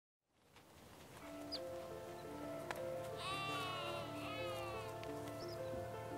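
Background music with a slow stepped melody fades in. About three seconds in, a high, bleat-like animal squeal, likely a warthog, rises and falls for about a second and a half.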